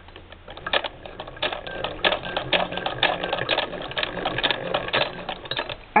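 Hand-cranked Singer 66 sewing machine doing free-motion embroidery through a sprung needle clamp attachment. It gives a steady mechanical clatter of about two stitches a second, each stitch a close double click.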